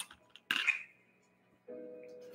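Paintbrush rinsed in a water cup, with a short clink of the brush against the cup about half a second in. A faint held musical tone comes in near the end.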